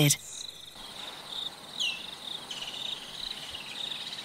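Insects chirring steadily in grassland ambience, a high continuous trill, with one short falling chirp about two seconds in.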